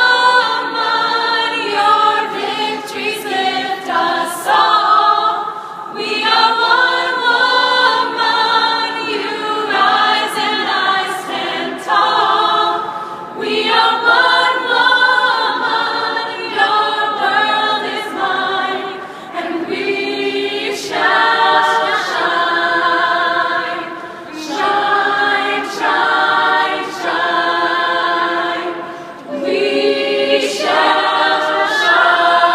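A women's a cappella choir singing in close harmony with no instruments, in sustained chords phrased every few seconds.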